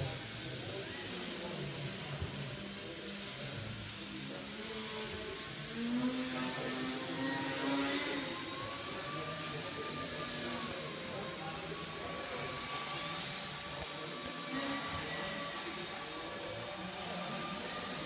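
Small electric motor and propeller of an indoor foam RC model plane running with a steady thin high whine, its pitch shifting as it flies, echoing in a large sports hall. Voices murmur in the background, with a louder stretch about twelve seconds in.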